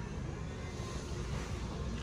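Steady background noise inside a large store: an even hum with no distinct sounds standing out.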